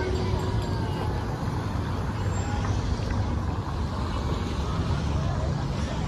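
Street ambience: a steady low rumble of traffic with background voices of people talking.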